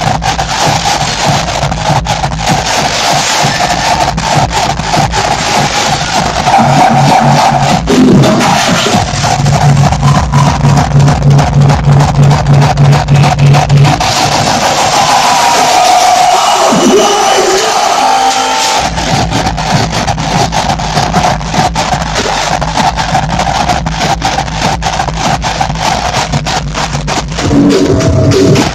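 Hardcore electronic music played loud over a club sound system, a fast distorted kick drum beating steadily under a held synth melody. In the middle the kick drops out for a few seconds of breakdown, then comes back in.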